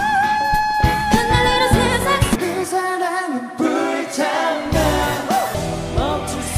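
Live K-pop stage singing over a backing track: a female singer holds one long note for about the first second, then sings on as the bass drops out for a while. Near the end the music changes to a male singer's live vocal over a different backing track.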